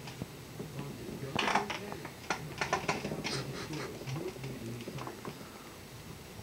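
Swivel office chair turning, with a run of clicks and rattles from its base from about one and a half to three and a half seconds in.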